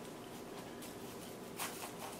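Faint rustling and light crunching of panko crumbs and the paper beneath them as a battered zucchini flower is rolled in them by hand, with a small tick about one and a half seconds in.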